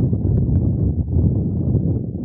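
Wind buffeting the microphone: a steady, fluttering low rumble.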